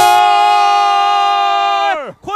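A football commentator's long, drawn-out shout of "goal!" (골), held on one steady pitch for about two seconds and dropping away at the end.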